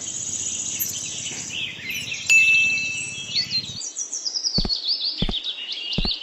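Birds chirping in quick, high calls, with a short chime about two seconds in and a few sharp clicks in the second half.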